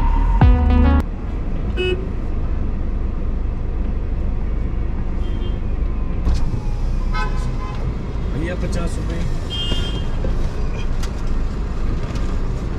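A car horn toots briefly in the first second, then the steady low rumble of a car creeping through slow street traffic, heard from inside the car.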